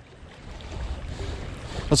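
Wind rumbling on the microphone over choppy river water, a low steady noise that swells slightly.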